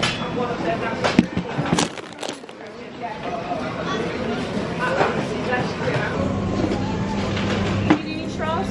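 Indistinct background voices in a café, with a few sharp knocks from the camera being handled about one to two seconds in, and a steady low hum that starts about six seconds in.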